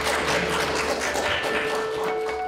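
Audience applause, a dense patter of hand claps, with music coming in beneath it on a steady note. Near the end the clapping gives way to plucked-guitar music.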